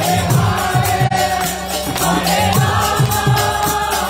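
Kirtan music: voices chanting together over harmonium, with a drum and hand percussion keeping a steady, even beat.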